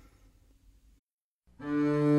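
Faint room tone, then a brief dead silence. About one and a half seconds in, a live recording of a jazz ensemble with a computer-played virtual string orchestra begins on a held chord.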